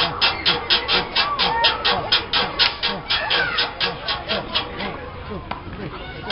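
Hip-hop backing track with a fast, even hi-hat pattern of about six ticks a second, thinning out briefly near the end, with voices underneath.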